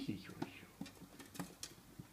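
Light, irregular clicks and taps of a small dog's claws on a plastic crate as it gets up and climbs over the edge.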